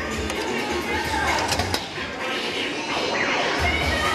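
Amusement arcade din: machine music and electronic jingles mixed with background voices, loud enough that the place is called too noisy to record in. A few sharp clicks come about a second and a half in, as tokens are fed into a coin pusher machine.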